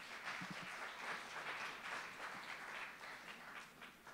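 Audience applauding, fairly faint, thinning out near the end.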